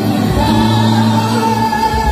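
Live-band gospel worship music: singers' voices over keyboard and bass through a PA, with a long held note from about half a second in until near the end.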